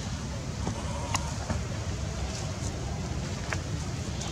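Steady low outdoor rumble, with a few faint, short high squeaks and one sharp click about a second in.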